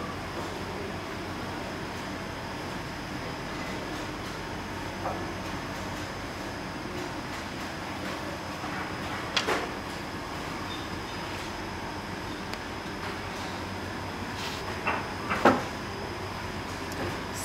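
Steady hum of room noise, with a few light knocks and handling sounds as a light meter's sensor is moved along a wooden ruler on carpet: a sharper one about nine and a half seconds in and a small cluster near the end.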